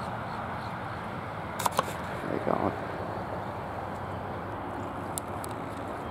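Camera handling clicks over a steady outdoor background noise: two sharp clicks about a second and a half in, then two faint ones near the end. A brief low voice-like sound comes in the middle.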